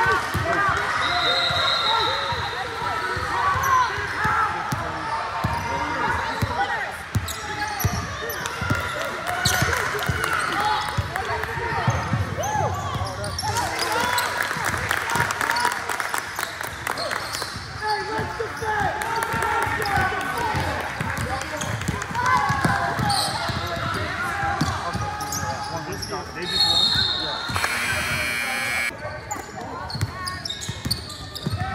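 A basketball bouncing on a hardwood gym floor during play, with indistinct voices of players and spectators calling out throughout. A few short high squeaks of sneakers on the floor, the most prominent near the end.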